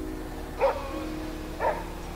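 Two short dog barks about a second apart, over steady background music.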